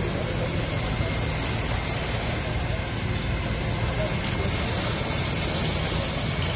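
High-pressure disinfectant sprayer on fire-fighting equipment running: a steady engine rumble under a continuous hiss of spray.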